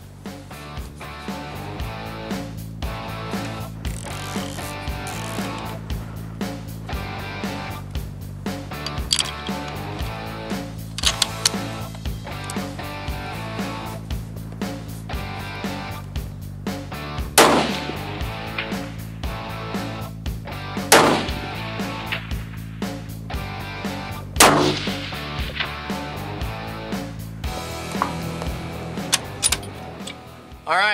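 Background music with a steady beat, and three loud rifle shots a few seconds apart past the middle, each followed by a short ringing tail, as a scoped bolt-action rifle is fired from a bench rest to check its zero.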